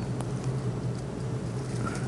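A steady low hum under faint rustling of a cloth handkerchief and netting being gathered up by hand, with a light click or two.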